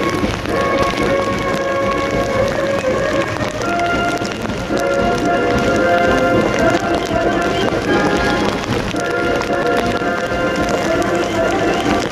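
A military band playing a march, heard over heavy rain falling on the ground.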